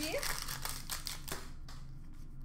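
Trading cards being handled and sorted by hand: a quick run of light card clicks and slides that thins out after about a second and a half, over a low steady hum.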